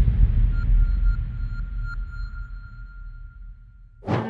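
Cinematic logo-sting sound effect: a deep low boom dying away over a few seconds, with a faint thin high ringing tone and a few soft pings over it.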